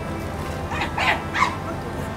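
A dog barking three short times in quick succession, about a second in, over background music.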